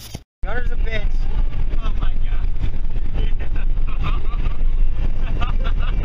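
Loud, steady low rumble of a car driving at highway speed, heard from inside the cabin: wind and road noise, starting abruptly about half a second in. People's voices come and go over it.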